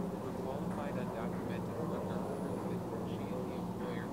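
A synthetic text-to-speech voice reading a written text aloud, partly buried under a steady low hum and rumble.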